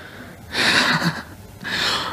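A man breathing heavily close to a handheld microphone: two loud breaths, about half a second in and again near the end.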